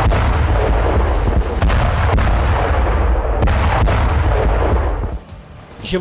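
Artillery shelling: a continuous deep rumble of blasts with several sharp reports cutting through it, dying away about five seconds in.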